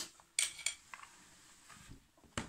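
A short breathy burst like a sniff, then two quick clinks of tableware about half a second in, followed by faint small clicks of eating at the table.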